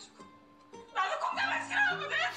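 A young woman's voice shouting an angry complaint in Korean, high-pitched and strained. It starts about a second in, after a near-quiet moment, over a low steady music note.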